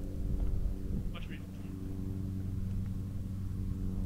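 A steady, low, motor-like hum with a faint, brief voice about a second in.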